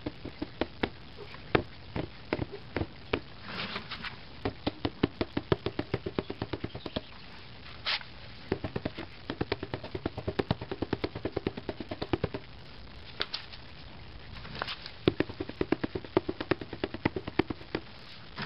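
Plastic bowls full of wet cement knocked against a concrete patio in rapid runs of sharp taps, about five a second with short pauses between runs, to bring trapped air bubbles out of the mix.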